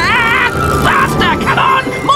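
Cartoon soundtrack: background music with wavering, warbling voice-like cries, strongest at the start and again about a second in.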